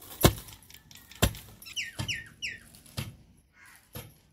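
A long wooden pestle pounding cracked maize in a mortar: three dull strikes about a second apart, the first the loudest. Three short high falling whistles come about two seconds in.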